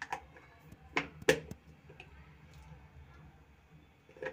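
A few sharp clicks and light taps of kitchen utensils, the loudest a pair about a second in.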